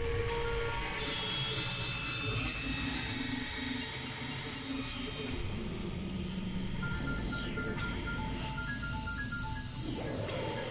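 Experimental electronic synthesizer music: layered drones and steady held tones, with sustained low notes that change every second or so. In the second half, short repeated high blips come in. A few high sweeps fall in pitch.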